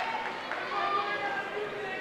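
Indistinct voices of spectators talking and calling out in a gymnasium, several overlapping, with no words clear.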